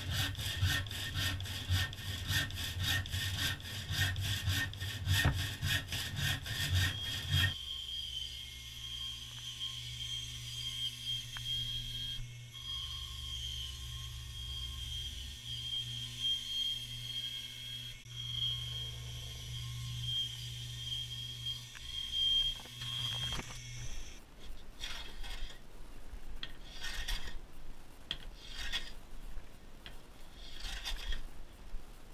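A handsaw cutting a bubinga board with quick, even back-and-forth strokes for about the first seven seconds. Then a bandsaw runs with a steady high whine over a low hum as a board is fed through it, stopping about three-quarters of the way in. In the last few seconds a hand plane shaves along the wood in irregular strokes.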